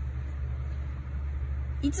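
A steady low background hum with no change through the pause; a woman's voice begins near the end.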